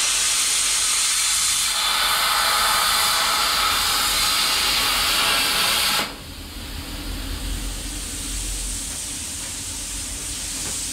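Plasma cutter slicing through the steel brackets on an old car's rear axle housing: a loud steady hiss that changes tone about two seconds in and cuts off suddenly about six seconds in. A quieter steady hum carries on after the cut stops.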